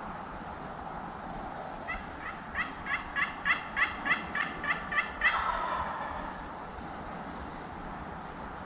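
Wild turkeys calling: a run of about ten yelps, about three a second, followed straight away by a gobble lasting about a second. A small bird's high, wavering trill follows near the end.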